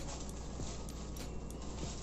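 Steady low hum with a soft hiss: quiet kitchen room tone with no distinct events.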